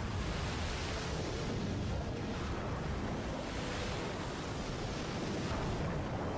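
Sea water surging: a steady rushing noise of waves and churning water.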